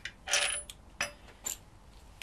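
Steel engine-stand mounting bracket and its bolts clinking against each other and the engine block as they are handled: a short metallic rattle about a third of a second in, then two single clinks about a second and a second and a half in, the last ringing briefly.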